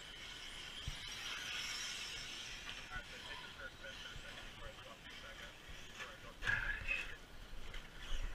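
Faint high whine of a radio-controlled car's motor running on the dirt track, rising and fading over the first few seconds, then a brief voice about six and a half seconds in.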